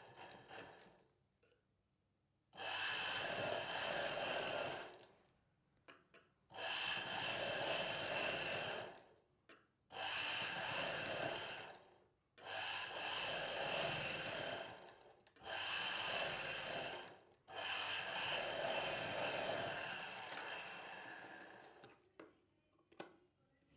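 Straight-stitch sewing machine running in six short runs of two to four seconds each, with brief stops between them. The first run begins about two and a half seconds in.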